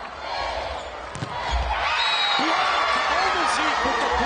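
Volleyball rally in an indoor arena: a sharp hit of the ball about a second in, then the crowd and players' voices get louder and stay loud, with shoes squeaking on the hardwood court.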